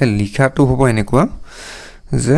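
A man speaking briefly, then a short breath drawn in just before the end.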